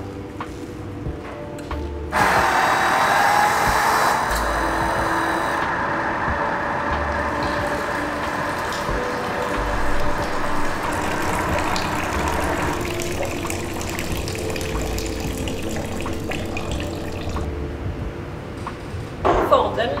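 Silage additive spraying from the nozzles of a Serigstad SmartFlow applicator's boom. It comes on suddenly about two seconds after Start is pressed, a steady spray that drops lower about two-thirds of the way through and fades near the end. The quick start is because an electric shut-off valve holds the liquid high in the hose.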